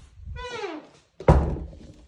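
A hinge squeaking with a short, falling pitch, then a single loud thunk just past the middle: a hinged door being swung and knocking.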